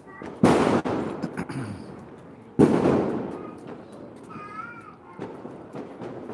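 Two loud firecracker bangs about two seconds apart, each dying away over about a second, with smaller sharp pops of crackers around them.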